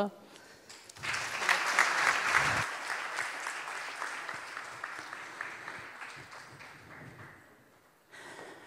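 Audience applauding, starting about a second in, loudest at first and then fading out over several seconds.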